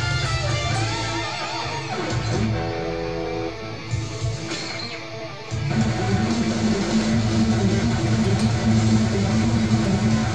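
Electric guitar playing metal: fast lead lines at first, a held chord in the middle where it goes quieter, then a louder low repeating riff from about six seconds in.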